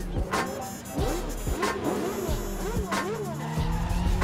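Sports car engines revving as the cars drive past, the pitch rising and falling in short swoops, mixed with soundtrack music that has a heavy beat.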